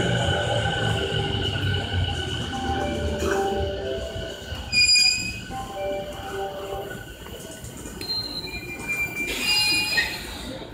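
A Musashino Line train pulling into the platform, its brakes and wheels squealing in several shifting high tones that fade as it slows. A brief, louder squeal comes about five seconds in, and more high squealing near the end.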